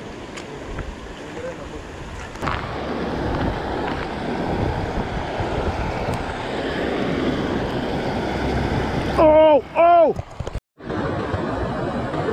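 Shallow river water rushing over stones, heard close to the water, with some wind on the microphone; the rush grows louder a few seconds in. Near the end, two short, loud vocal exclamations, then the sound cuts out for a moment.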